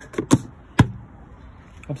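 Hinged plastic cover of a motorhome's external mains hook-up socket being shut by hand: two quick knocks, then a louder sharp snap a little under a second in.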